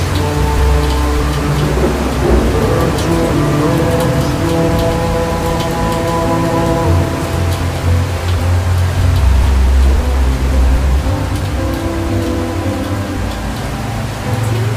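Slowed-down pop ballad, long held chords, mixed over a steady rain sound with light pattering drops.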